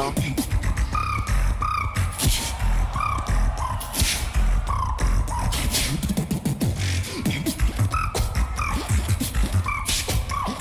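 Solo beatboxing into a microphone: a steady beat of deep kick-drum sounds and sharp hissing snare and hi-hat sounds, with short high pitched tones repeating over it.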